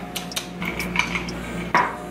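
Kitchen items clinking and clattering as they are handled on a countertop: a series of small, light knocks, with one louder knock near the end.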